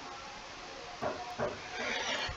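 Steady low hiss of microphone room noise, with a few short, faint voice-like sounds in the second half.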